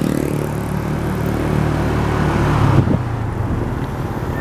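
Vehicle engine running steadily under wind and road noise while travelling, with a short rise in the engine note about three quarters of the way through.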